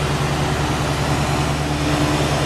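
Oxygen-propane bench-mounted glassworking torch burning with a steady hiss, over a constant low hum.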